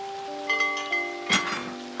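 Bell-like chimes: several ringing notes start one after another and hang on together, with one sharp struck note about a second and a half in.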